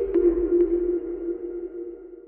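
Electronic logo sting: a held low synth tone with a few faint ticks over it, fading away near the end.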